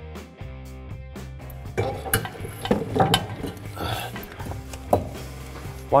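Background music with a steady beat. From about two seconds in, scattered metallic clinks and knocks come over the music as a rear CV axle is handled and its splines are lined up into the differential.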